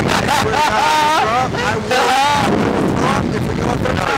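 A rider laughing in a high, wavering squeal for about two seconds, over steady wind rushing on the microphone as the ride capsule flies.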